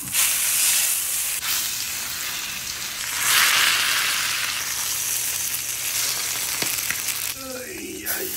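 Sous-vide prime rib roast searing in hot oil in a cast iron skillet, sizzling steadily, louder for a moment about three seconds in and fading near the end.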